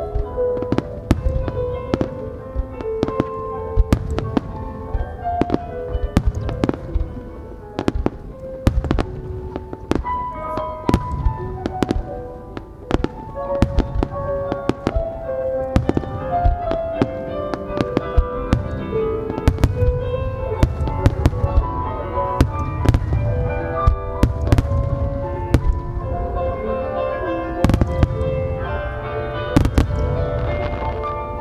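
Aerial fireworks shells launching and bursting, a sharp report every second or so, over a chiming, bell-like melody of the music that the display is set to.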